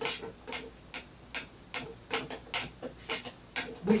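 A spoon stirring dried dandelion into freshly boiled water in a stainless steel electric kettle. It scrapes and knocks against the kettle wall in short strokes, about three a second, each with a brief metallic ring.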